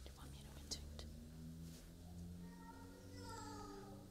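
A faint, soft voice murmuring, ending in a drawn-out, slightly falling tone, over a low steady hum with a couple of soft clicks in the first second.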